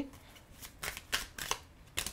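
Tarot cards being handled and laid down on a table: a handful of short, sharp card snaps.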